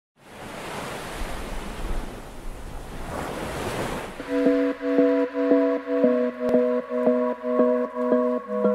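Sea surf washing for about the first half. Then music comes in with a pulsing chord struck about twice a second.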